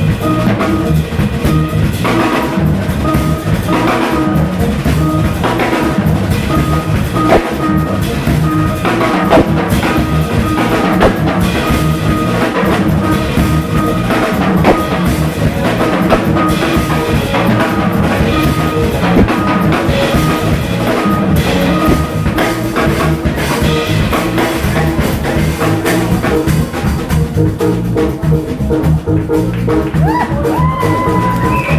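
Live jazz trio of drum kit, electric bass guitar and keyboard playing a jam, with busy drumming over a steady bass line.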